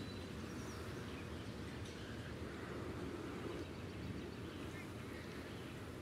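Quiet outdoor park ambience: a steady low background rumble with a few faint bird calls.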